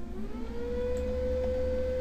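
A steady, pure whining tone with faint overtones that glides up in pitch over the first half second, then holds steady.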